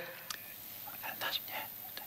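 Faint whispered or murmured talk over low room tone.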